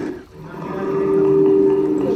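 Television drama soundtrack: the sound dips almost to quiet for a moment at a scene change, then a low steady droning tone comes in and holds.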